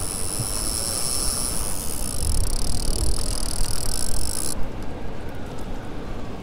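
Steady rushing noise of fast river water around a small fishing boat, with a low rumble underneath; about four and a half seconds in, the high hiss drops away abruptly.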